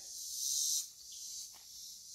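Insects chirring in a steady high-pitched haze, louder for the first second.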